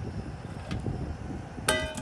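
Metal lid set down on a stainless-steel camping pot, giving one short, bright metallic ring near the end, over a low rumble.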